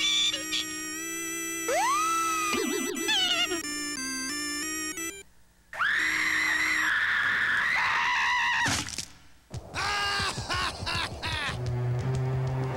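Synthesizer music with electronic sound effects from an animated TV ident. A tone glides up about two seconds in, the sound cuts out briefly a little before halfway, then a long wavering high tone follows, with short falling glides near the end.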